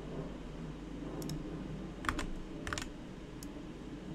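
A few scattered keystrokes on a computer keyboard, short sharp clicks spread a second or so apart, over a faint low hum.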